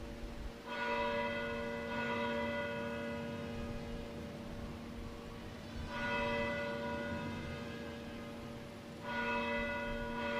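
A single church bell tolling slowly for a funeral, struck about four times a few seconds apart. Each stroke rings on and fades before the next.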